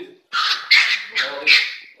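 A dog giving four short, loud, high-pitched yelps in quick succession.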